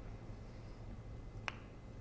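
Quiet room tone with a faint low hum, broken by one short, faint click about one and a half seconds in.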